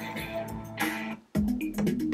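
Music playing from a cheap USB MP3 decoder module through an amplifier. About a second and a quarter in, it cuts out for an instant and a different track starts: the module skipping to the next track on a remote-control 'next' press.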